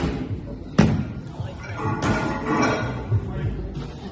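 A thrown sandbag lands on concrete with a single heavy thud about a second in, over background music.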